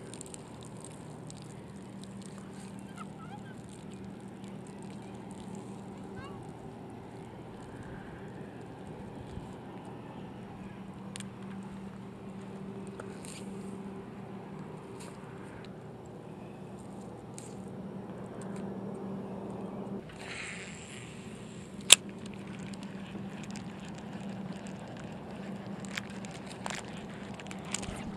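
A steady low hum in quiet lakeside background, with small handling clicks and rustles as wet weed is picked off a fishing lure by hand, and one sharp click a little after the middle.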